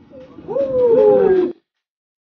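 A person's voice giving a drawn-out, falling cry with a wobble in the middle, about a second long, cut off abruptly.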